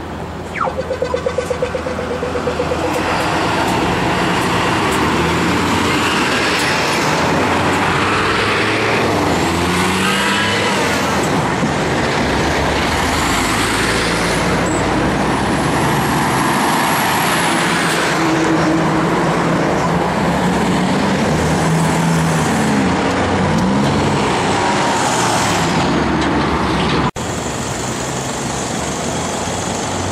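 Heavy road traffic at an intersection: trucks and cars driving past close by, with steady engine and tyre noise. There is a short rapid pulsing about a second in and several rising and falling high whines through the middle. The sound cuts out for an instant near the end.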